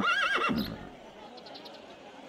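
A horse whinnies once, a short wavering neigh of about half a second at the start, followed by a low, steady outdoor background.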